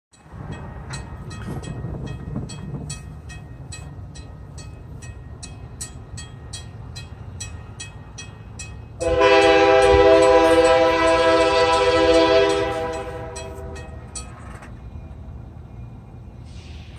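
Grade-crossing warning bell dinging about twice a second while the crossing gates come down, stopping near the end. About nine seconds in, a locomotive air horn blows one long blast of about four seconds for the approaching train, the loudest sound here. A car passes over the crossing at the start.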